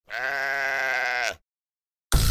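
One drawn-out call with a quavering pitch, about a second long, sliding up at its end and then cutting off, played as a channel intro sting.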